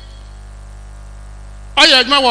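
Steady low electrical mains hum from the microphone and sound system, carried through a pause in speech. A man's voice starts again near the end.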